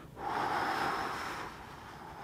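A man's long audible breath during a torso-rotation exercise, starting just after the start and fading out within about a second and a half.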